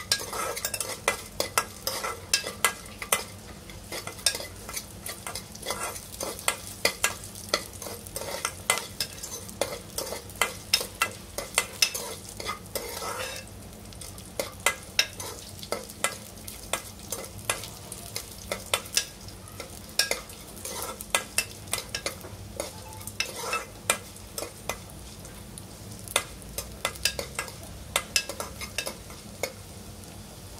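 A steel spoon stirring and scraping cashews, raisins, cumin and peppercorns frying in oil in an aluminium pressure cooker: a steady low sizzle under frequent, irregular clicks and scrapes of the spoon against the pot.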